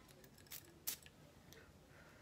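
Near silence broken by two brief faint clicks, about a third of a second apart, from a small perfume sample bottle being handled.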